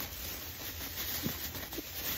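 Thin plastic bag rustling as it is held upside down and shaken, emptying small candies and toys onto carpet, with a couple of faint taps in the second half as pieces land.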